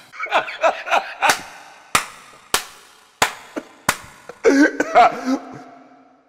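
A man laughing through five sharp smacks about two-thirds of a second apart. Breathy laughter comes first, and it breaks into an open, voiced laugh near the end.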